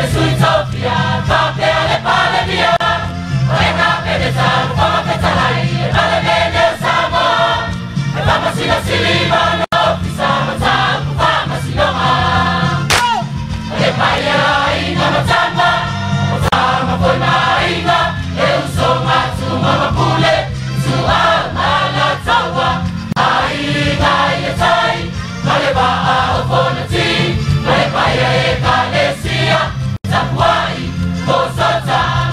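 A choir singing a hymn with instrumental accompaniment and a steady bass line, with a momentary dropout about ten seconds in.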